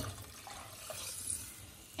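Water poured from a glass measuring cup into a saucepan of soup, a soft steady splashing that eases off near the end.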